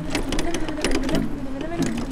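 A bicycle's chain and hub clicking and rattling irregularly, under a voice holding a wavering, sliding note.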